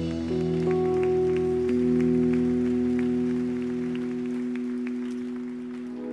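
Held keyboard pad chords, shifting twice in the first two seconds and then sustained and slowly fading, with scattered claps from the congregation.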